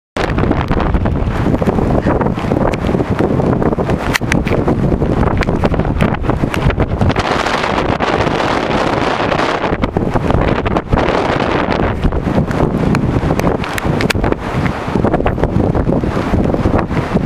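Strong wind buffeting the microphone: a loud, continuous rushing rumble with gusty crackles.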